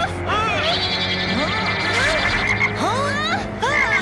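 Cartoon toad croaking repeatedly, each croak a short up-and-down glide in pitch, over background music.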